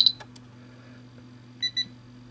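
Two short, quick beeps from the buzzer of an add-on auto timer module in a Spektrum DX7 radio transmitter as it powers up with the clear button held, signalling that the throttle-activated timer is switched off.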